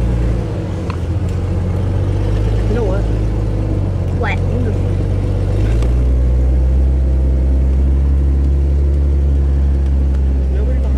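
Vehicle engine running steadily as it drives slowly along a dirt trail, a low drone that gets louder and steps up in pitch about six seconds in. A few short squeaky glides come about three to four and a half seconds in.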